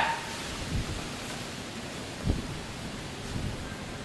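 Steady hiss of background noise, with a faint thump a little over two seconds in.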